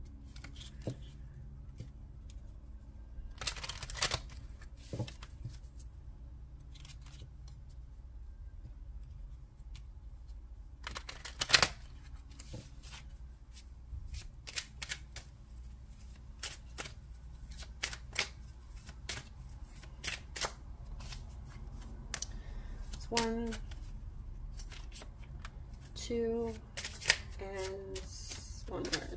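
A deck of message cards being shuffled by hand: a long irregular run of light card snaps and taps, with a couple of sharper slaps about 4 and 11 seconds in.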